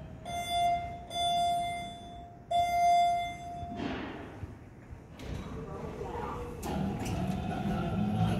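Elevator arrival chime: three steady electronic tones in quick succession, the middle one longest, as the Thyssenkrupp traction car arrives going down. After the chime comes a short rush of noise as the doors open, then shuffling and a sharp click.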